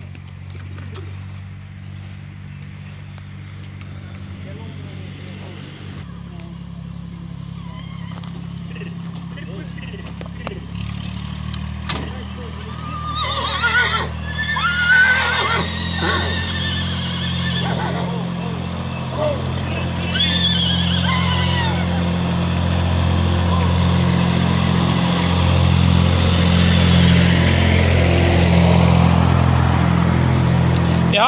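Draft stallion whinnying in a few high, gliding calls about halfway through, over a steady low engine drone that grows louder toward the end.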